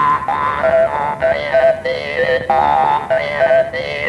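Hmong ncas (jaw harp) played in short, speech-like phrases, its overtones shifting like vowels as the player shapes words into the instrument's tone.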